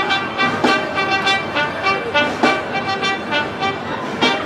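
Marching band playing: sustained brass chords over drum and percussion hits.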